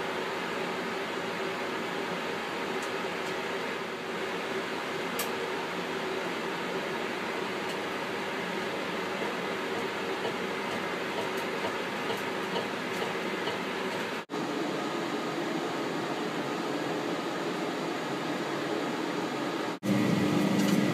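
Steady hum and hiss of projection-booth ventilation, with a few faint clicks over it. The sound drops out for an instant twice, once about two-thirds of the way through and again just before the end.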